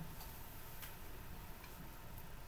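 Quiet room tone with a few faint, light clicks.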